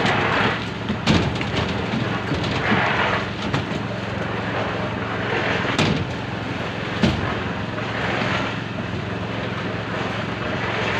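A small engine running steadily throughout, with a few sharp knocks of a concrete bucket being handled over the steel rebar.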